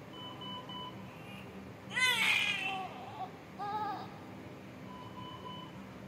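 A newborn with severe respiratory distress syndrome gives a short, strained cry about two seconds in and a briefer second cry soon after, while its chest is pressed during chest physiotherapy. A steady electronic monitor beep sounds near the start and again near the end.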